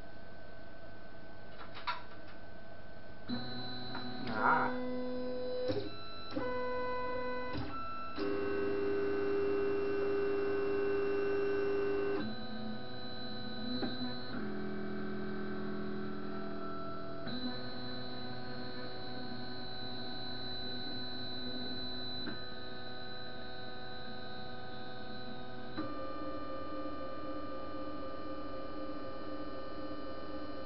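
Anet ET4+ 3D printer's stepper motors whining through a series of steady pitches that jump to a new pitch every few seconds as the axes move during auto bed leveling. It is loudest about eight to twelve seconds in, with a few faint clicks in the first few seconds.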